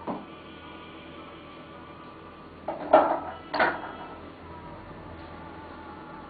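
Two short clatters of hard objects being handled, about half a second apart, near the middle, over a steady low room hum.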